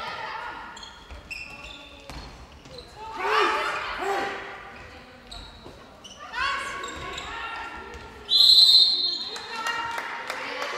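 Handball game in a large sports hall: the ball bouncing on the court floor and players shouting, then a sharp referee's whistle blast about eight seconds in, the loudest sound.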